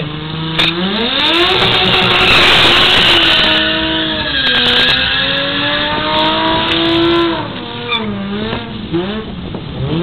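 3-litre Toyota Chaser drag car doing a burnout: the engine is held at high revs with its rear tyres spinning on the tarmac, the pitch climbing, dipping and climbing again before the revs drop away about seven seconds in.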